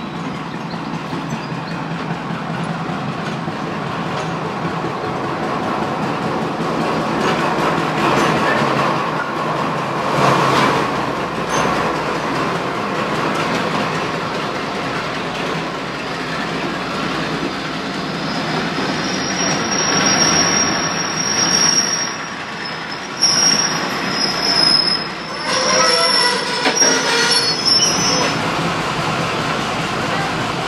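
A diesel-hauled passenger train running past close by, its coaches giving a steady loud rumble. In the second half, high metallic wheel squeal comes and goes for several seconds.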